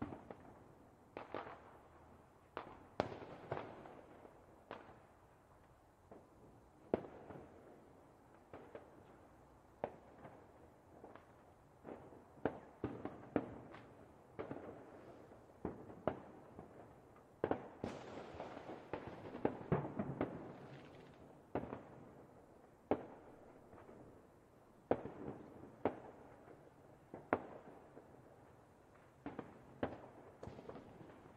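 Fireworks and firecrackers going off at irregular intervals, sharp cracks and bangs each with a short echoing tail, thickening into a rapid flurry a little past the middle.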